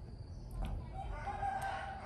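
A rooster crowing in the background: one long call, starting about half a second in and lasting about a second and a half.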